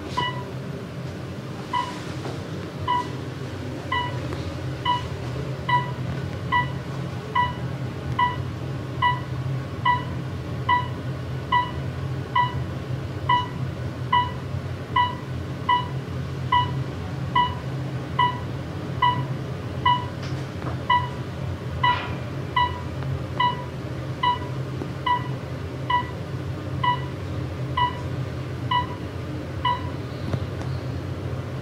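Elevator car travelling down, its steady low running hum under a short electronic beep that repeats evenly a little more than once a second, starting about two seconds in.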